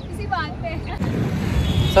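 Faint voices in the first second, then from about a second in a steady low rumble of outdoor background noise, like wind on the microphone or distant traffic, under the voice that follows.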